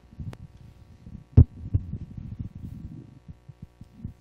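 Handling noise on a handheld microphone: low rumbling bumps as it is moved, with one sharp thump about one and a half seconds in, over a faint steady electrical hum.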